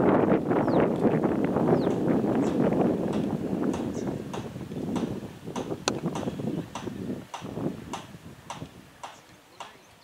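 Wind buffeting the microphone, strong at first and easing off, with a string of short, sharp ticks throughout. The sharpest crack, about six seconds in, is a cricket bat striking the ball.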